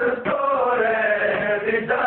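A male reciter chanting a Pashto noha, a Shia mourning lament, holding one long sung note that slowly sinks in pitch before breaking off near the end.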